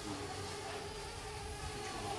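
Faint, steady hum of a quadcopter drone's propellers, holding one pitch as it hovers high overhead.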